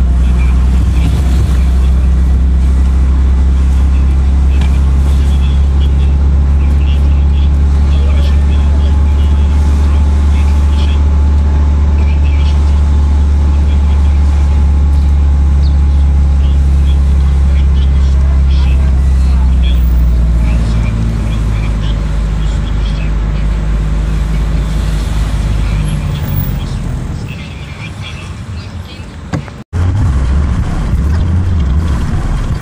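Car engine and road noise heard from inside the cabin while driving slowly in city traffic: a loud, steady low drone that eases off after about 20 seconds and drops lower again near the end.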